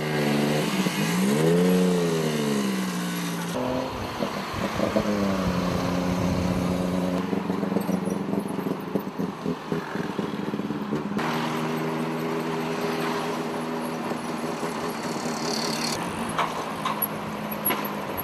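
Tuk-tuk engine running on the move, its pitch rising and falling as it revs over the first few seconds, then holding steady under road and wind noise.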